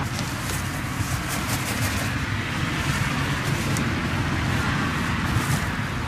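Steady road traffic noise from a nearby busy road: a constant low rumble and hiss of passing cars.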